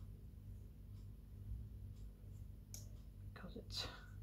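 Quiet room with a low steady hum and faint small handling sounds as fingers work a glued wooden craft dowel. A short, soft scratchy sound near the end is the loudest thing.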